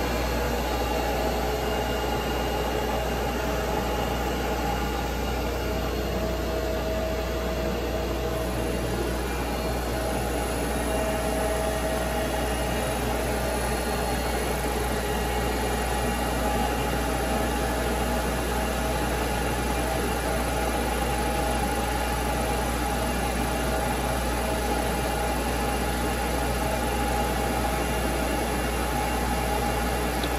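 Kellenberger Kel-Varia UR 175 x 1000 CNC universal cylindrical grinder running through a plunge-grind cycle, its grinding wheel spindle turning and its coolant pump motor on with no coolant: a steady machine hum with a faint held whine.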